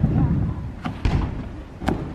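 Heavy thuds of a person landing and bouncing on an in-ground trampoline bed, with two sharp clicks, one just before a second in and one near the end.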